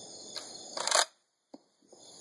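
Pump-action slide of a UTAS UTS-15 12-gauge bullpup shotgun being worked by hand after a failure to fire. There is a light click, then a louder metallic rasp and clack about a second in, and one faint click after it.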